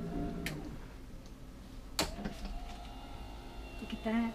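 Power recliner's footrest extending: a click about half a second in, a louder clunk at about two seconds, then the electric motor running steadily.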